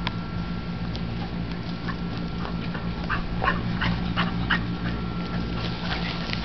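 Dogs playing and giving a string of short yips, several close together in the middle, over a steady low hum.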